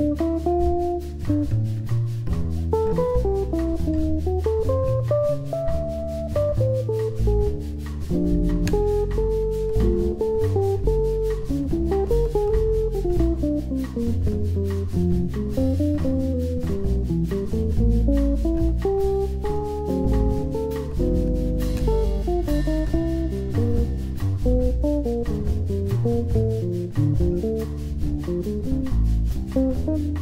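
A jazz quartet playing an instrumental: a plucked, guitar-like lead line winds up and down over a bass line and drum kit, with a steady cymbal tick.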